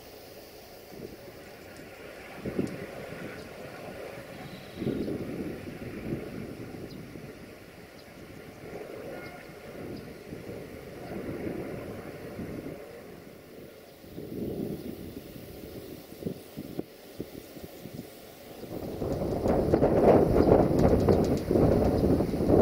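Wind buffeting the camera microphone in uneven gusts, a low rumble that swells and fades. It becomes much louder and rougher in the last few seconds.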